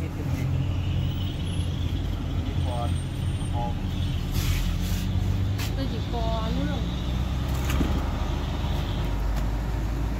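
A steady low hum, with faint voices in the background about three seconds in and again around six to seven seconds in.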